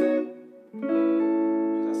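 Suhr electric guitar with a clean tone: a short chord at the start fades out, then about a second in another chord is struck and left to ring steadily, an A chord voicing with the little finger adding a note.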